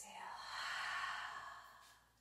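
A woman's long audible breath out, a breathy sigh of about two seconds that swells and then fades.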